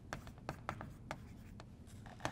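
Chalk writing on a slate chalkboard: a quick run of short taps and scratches as letters are written.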